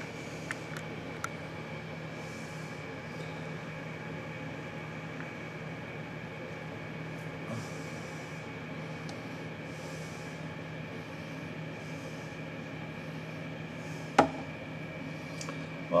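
Steady room hum with a faint high whine, broken by a single sharp click about 14 seconds in.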